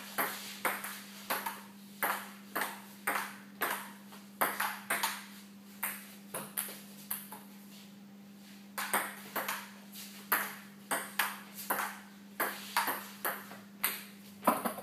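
Table tennis ball clicking back and forth off the paddles and table in a rally, about two hits a second. Play breaks off for a moment about halfway, then resumes, over a steady low hum.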